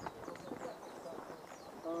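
Footsteps of several people walking on a gravel and dirt path, a run of light steps.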